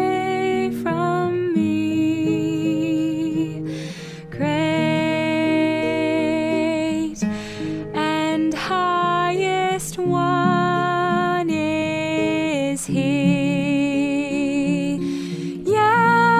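A hymn sung by one voice in long, held phrases with a wavering vibrato, over acoustic guitar accompaniment.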